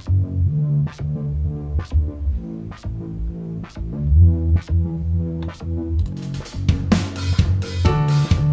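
Electronic song playback led by a distorted synth bass line run through Studio One's AutoFilter plugin on a bass line preset, its filtered notes pulsing under a drum beat with a sharp hit about once a second. About six seconds in the drums get busier and brighter.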